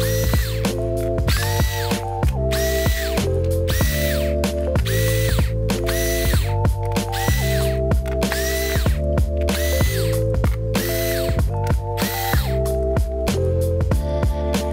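Cordless electric screwdriver backing out small laptop bottom-cover screws: a quick string of short whirring bursts, about one and a half a second, each spinning up to a steady pitch and winding down. Background music plays throughout.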